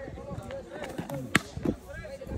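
A baseball pitch at about 87 mph smacking into the catcher's mitt with one sharp pop about a second and a half in. Faint voices are heard around it.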